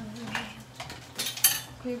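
Glassware and bar tools clinking on a counter while a drink is made: a few sharp clinks, the loudest about a second and a half in.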